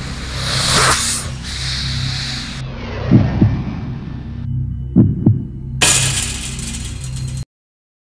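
Channel logo intro sound design: a low pulsing bass drone with a rushing whoosh at the start, two pairs of deep hits about three and five seconds in, and a second bright whoosh before it cuts off suddenly near the end.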